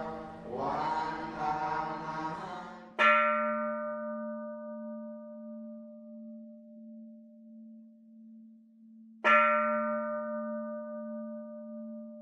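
A bell struck twice, about six seconds apart, each strike ringing out and fading slowly over a steady low drone. In the first few seconds, before the first strike, chanting voices sound over the drone.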